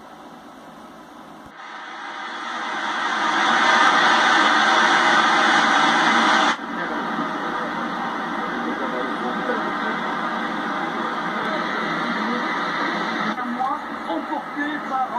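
Loud, even rush of fast-flowing floodwater, from a torrent of muddy water running down a street. About six and a half seconds in it cuts off suddenly to a quieter, steady rush of water.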